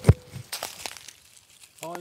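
Dry leaf litter crackling and crunching as a hand searches through it on rocky ground, with a sharp thump just after the start and a few short crackles after.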